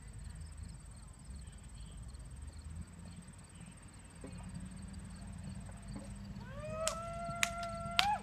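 Crickets chirping in an even, repeating rhythm over a steady high insect trill and low outdoor rumble. Near the end a louder long call glides up and then holds one pitch for over a second, with a couple of sharp clicks.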